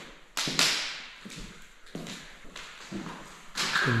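Footsteps and knocks of someone walking across a worn parquet floor: a few taps and thuds, the loudest about half a second in.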